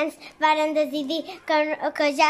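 A young child singing a short tune in held, steady notes.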